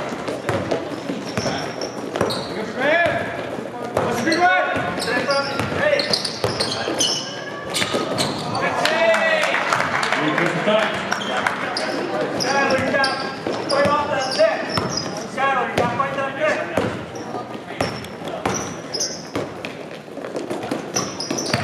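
Basketball game in a gym: the ball bouncing on the court floor, sneakers squeaking, and players and coaches calling out, all echoing in the hall.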